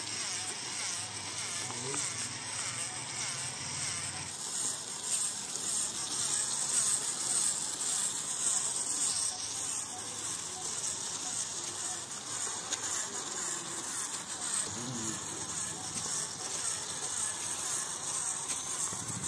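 Small electric motor of a homemade toy tractor running steadily, with a high, insect-like whine as it drives the tractor and trailer along.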